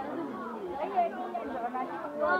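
People chattering in a busy market, several voices talking at once.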